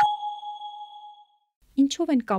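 A single bright chime struck once, ringing and fading away over about a second and a half, as the show's logo transition sound; a woman starts speaking again near the end.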